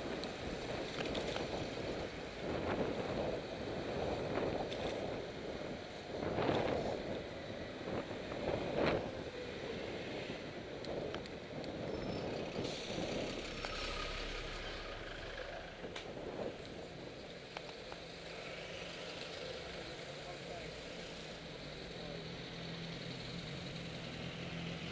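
Street traffic heard from a bicycle through a helmet-camera microphone, with wind rushing over the mic in gusts during the first half. In the later part it settles into a steadier low hum of engines idling nearby.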